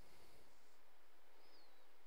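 Quiet room tone: a steady faint hiss, with a brief soft rustle at the start and a short, faint high chirp that falls in pitch a little past the middle.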